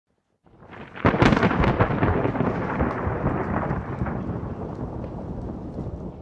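A thunder-like rumble: a sharp crackling crack about a second in, then a rolling rumble that slowly fades away.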